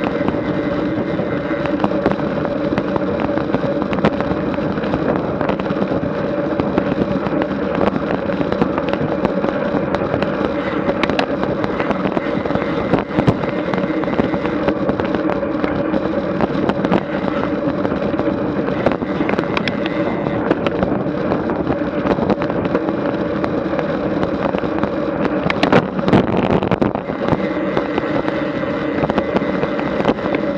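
Road bicycle rolling at about 22 mph, heard through a camera mounted on the bike: a steady hum of tyre and wind noise with a constant low drone, and rapid, irregular clicks and rattles from the bike and road surface.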